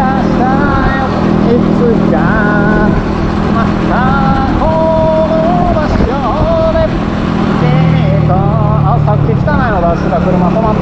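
Motorcycle engine running steadily at cruising speed with wind and road noise; its pitch dips a little near the end. A voice carries a wavering, held-note tune over it.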